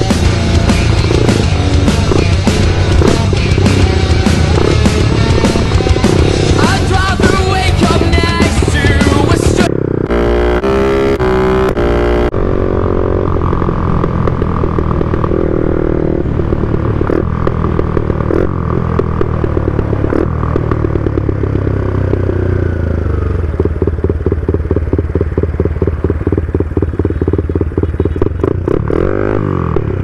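Music playing over a motorcycle engine running under way. The music-like sound cuts off about a third of the way in, and the engine carries on with its pitch rising and falling.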